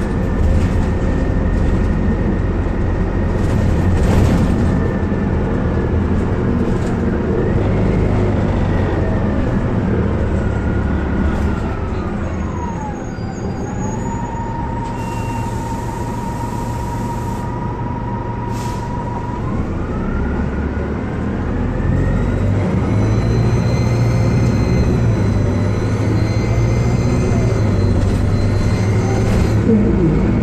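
2004 Orion VII CNG transit bus running, with its Detroit Diesel Series 50G natural-gas engine and ZF Ecomat automatic transmission: a steady low rumble under a drivetrain whine. Around twelve seconds in the whine falls in pitch and the sound softens. It holds low for several seconds, then climbs again. Thin high whistles rise and fall near the end.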